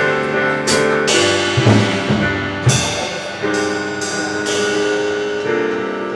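Live instrumental church band music: sustained keyboard chords that change every couple of seconds over a drum kit, with several cymbal crashes.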